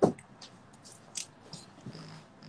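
A refrigerator door shuts with a single sharp thump, followed by a few light clicks and crackles from a plastic water bottle being handled.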